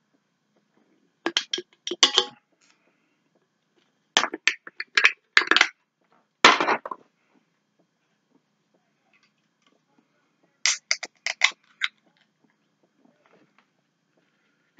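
Crinkling, crunching handling noise in four separate bursts of quick crackles, with silent gaps between them.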